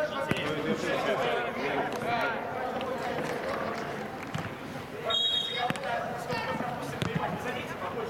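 Footballers shouting and calling to each other during play, with a few sharp knocks of the ball being kicked.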